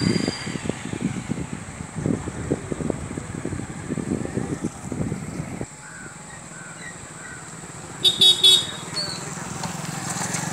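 Road traffic: a vehicle engine, likely a motorcycle, runs close by with a rough, uneven sound for about the first six seconds, then dies away. About eight seconds in, a vehicle horn sounds in three short toots.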